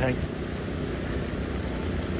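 Fountain jets splashing steadily into the pool: an even rush of falling water, with a low rumble underneath.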